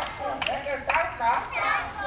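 A group of children's voices singing and calling out together at play.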